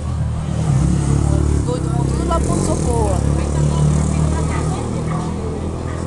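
A motor vehicle engine running steadily close by, a low even hum, under the voices of a crowd in the street. A few raised voices call out about two to three seconds in.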